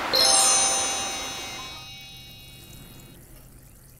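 A bright chiming logo sting: a burst of high, bell-like tones that starts at once, rings on and fades away over about three seconds.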